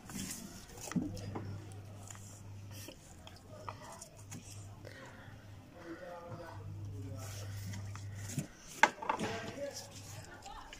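Spoons clinking and scraping in plastic bowls as two people eat noodles, with faint murmured voices and a low hum in stretches. A sharp knock comes near the end.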